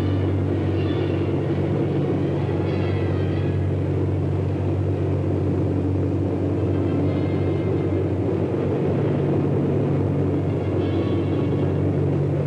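Steady, unbroken drone of a B-36 bomber's engines in flight.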